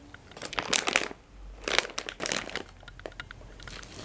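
Plastic packaging crinkling and rustling in irregular short bursts as it is handled.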